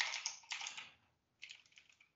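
Computer keyboard keystrokes typing a short command: a few key presses, a pause of about half a second, then a quick run of several more taps near the end.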